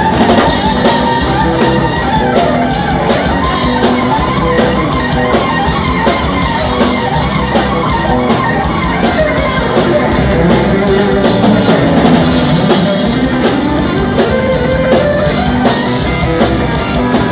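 Live rock band playing: electric guitars and drum kit, loud and steady.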